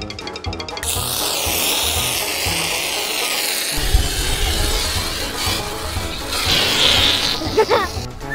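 Aerosol spray foam hissing out of cans in one long, continuous spray, with children's background music and a steady beat underneath. The hiss stops shortly before the end.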